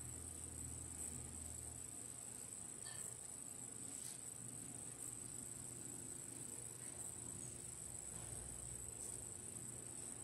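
Faint room tone: a steady high-pitched hiss with a low hum under it, and a couple of faint clicks.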